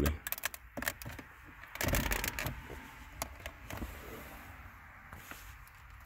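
Clicks and scrapes of an aluminium knob cover ring being pressed and worked by hand onto a tight-fitting climate-control knob. The clicking is densest in the first second, with a louder rub about two seconds in, then fainter handling clicks.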